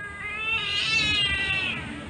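Siamese cat giving one long, high yowl that rises and then falls in pitch, protesting while her claws are being clipped.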